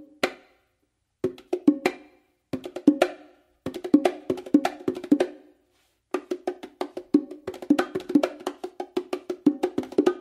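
Bongos played by hand, repeating a five-stroke combination of palm bass, finger stroke, open tone and closed slap across the two drums. The strokes come in short separate groups at first, then run on without a break from about six seconds in.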